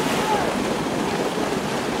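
Pool water churning and lapping as a polar bear dives under and swims beneath the surface, a steady wash of water noise.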